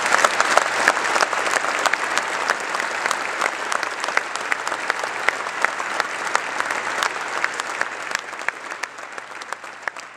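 An audience applauding steadily, growing gradually quieter toward the end.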